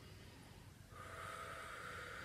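A person's long, deep belly breath, faint, beginning about a second in after a near-quiet pause.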